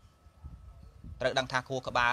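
Speech only: a monk preaching in Khmer, resuming after a pause of a little over a second.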